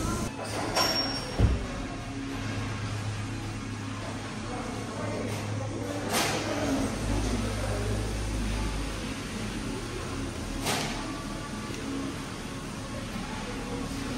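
Car-service workshop background: a steady low hum with a sharp knock about a second and a half in and a couple of fainter clanks later on.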